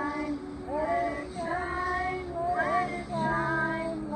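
A song sung by a single high, clear voice in phrases of long held notes, with a low sustained note joining underneath about three seconds in.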